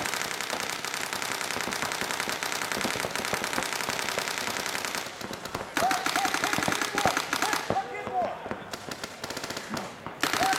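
Paintball markers firing rapid strings of shots, densest and continuous through the first five seconds, then thinner and more broken. Players shout between about six and nine seconds.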